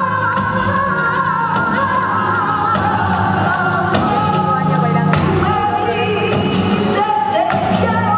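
Flamenco song played for the dance: a singer's long, wavering melismatic line over the accompaniment, with a few sharp clicks in the second half.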